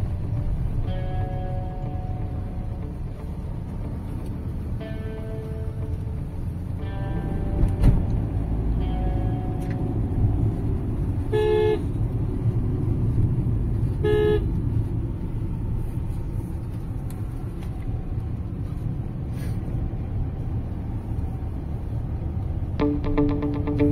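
Steady engine and tyre rumble heard inside a moving car's cabin, with short horn toots from traffic on the road. The two loudest toots come about eleven and fourteen seconds in.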